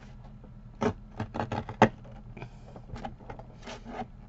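Fiskars guillotine paper trimmer blade forced down through a thick bundle of paper: a series of short scrapes, the loudest about two seconds in, then several weaker ones. The stack is thick enough that the blade cuts only part of it.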